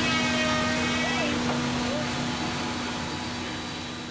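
Factory-floor background noise: a steady machinery hum under a broad hiss, with faint distant voices, gradually fading out.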